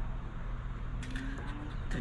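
Steady low background hum, with a coin briefly scraping across the latex coating of a paper scratch-off lottery ticket in the second half.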